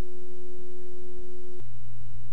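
A steady electronic pure tone that drops suddenly to a much lower steady tone about one and a half seconds in.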